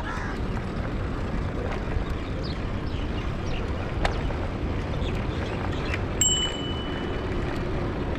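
Steady rushing noise of wind and tyres from a rental bicycle being ridden over brick paving, with a few light clicks. About six seconds in, a short ringing tone sounds for about a second.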